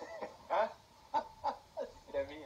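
Men laughing in about four short bursts, heard through a television speaker.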